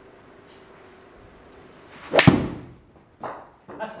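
Golf swing with a Ping Zing 1 iron: a short whoosh of the club coming down, then one sharp crack as the clubface strikes the ball, ringing off briefly. A solid, well-struck shot.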